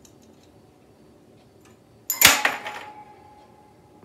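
A small toy ring handled by a budgerigar clatters down with one sharp knock about two seconds in, followed by a brief ringing tone that fades within about a second.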